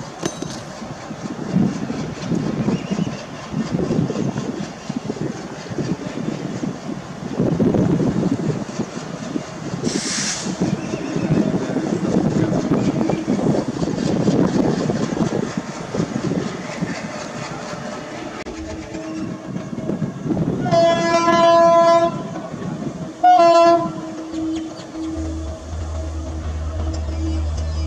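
WAP-7 electric locomotive hauling a passenger train on approach: wheels rumbling and clacking over the rails, with a brief hiss about ten seconds in. Near the end comes a horn blast of about a second, then a second, short blast.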